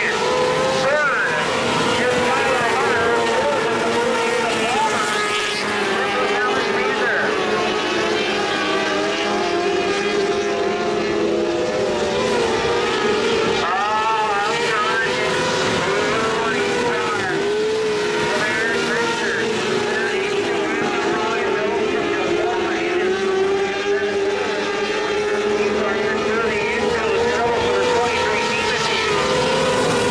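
Several micro sprint cars running laps on a dirt oval, their high-revving motorcycle engines overlapping and rising and falling in pitch as they go through the turns and down the straights.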